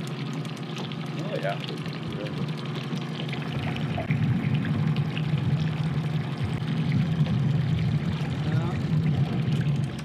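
Boat's outboard motor running steadily at trolling speed, its hum growing louder about four seconds in, with water splashing against the hull.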